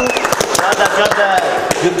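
A group of men laughing and talking over one another, with several sharp knocks scattered through the laughter.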